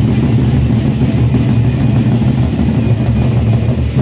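Gendang beleq ensemble: many large Sasak barrel drums beaten rapidly with sticks, merging into a dense, continuous drumming.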